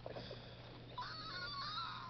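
A high-pitched, wavering voice-like squeal held for about a second, starting about a second in, over a steady low electrical hum.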